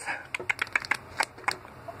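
Foil wrapper of a Pokémon Cosmic Eclipse booster pack crinkling in the hand as it is handled, a run of small irregular crackles.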